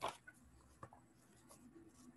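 Faint handling of a paper sketchbook: light rustles and a few soft clicks, with a sharper knock right at the start as the book is picked up.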